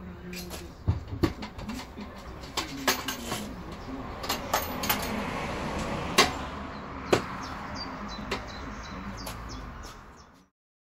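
Irregular knocks and clicks as a homemade Thien baffle separator top is lifted and set onto a steel oil drum and fitted in place, the loudest knocks just after six and seven seconds in.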